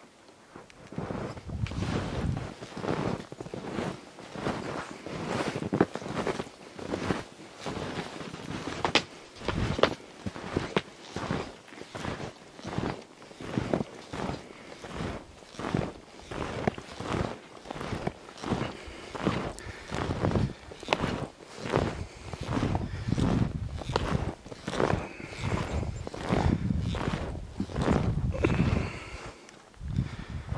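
Footsteps through snow, a steady walking rhythm of a little more than one step a second, starting about a second in.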